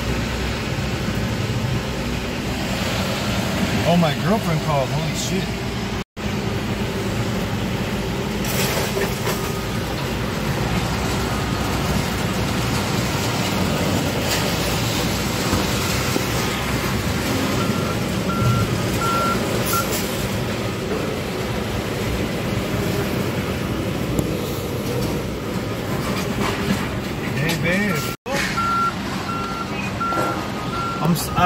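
Heavy equipment and truck engines running steadily, with a backup alarm beeping about twice a second in two stretches, one past the middle and one near the end, as a machine reverses.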